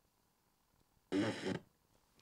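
Sony XDR-S61D DAB/FM radio muted while its FM tuning dial steps between frequencies, near silence, then about a second in a half-second snatch of broadcast sound from its speaker. The muting while tuning leaves a delay between each search.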